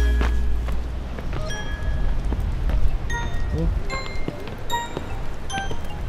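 Background music dropping from a heavy beat to a quiet passage of sparse, bell-like single notes over a low rumble that fades out about halfway through.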